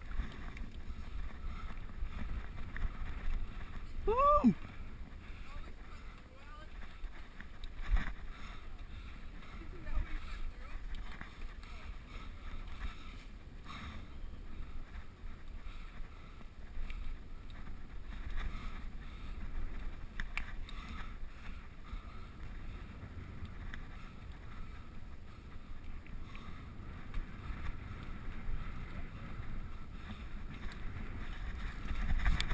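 Mountain bike rolling over a dirt forest trail, heard from a camera on the bike or rider: a steady low rumble of wind on the microphone and tyres, with the bike rattling and a few sharp knocks over bumps. About four seconds in there is one short rising-then-falling cry.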